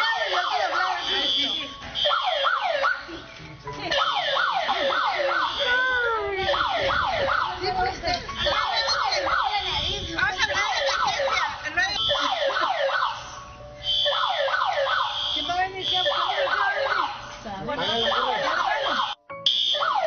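Electronic evacuation alarm siren sounding: rapid, repeating pitch sweeps several times a second with a high pulsing tone over them, dipping briefly a few times.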